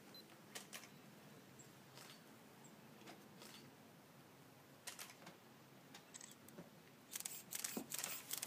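Near silence: a low steady hiss with scattered faint clicks, then a cluster of louder clicks and knocks about seven seconds in.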